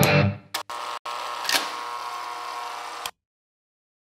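Electric guitar outro music. The rhythmic riff dies away about half a second in, then a final chord is struck and left ringing, and it cuts off abruptly about three seconds in.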